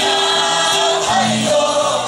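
A mixed chorus of Puyuma men and women singing together, holding long notes.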